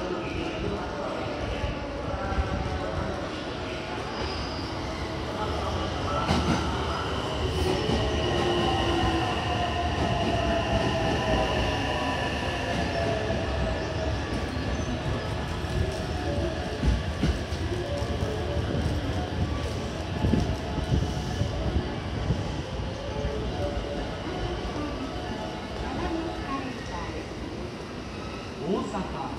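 A JR electric limited express train pulling into the platform and braking, its motors whining in a slowly falling pitch over the rumble of the wheels, with a high squeal from the wheels.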